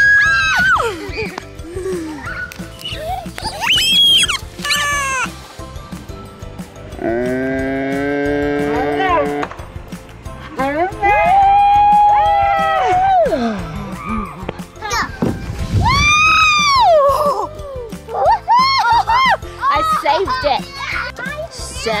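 Children and adults cheering and squealing "woo" while sliding down a plastic playground slide: a series of high calls that rise and fall, with one long held "woo" about seven seconds in.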